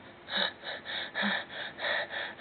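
A person's voice making short, breathy, effortful gasps and grunts, about three a second, like someone straining to take each step.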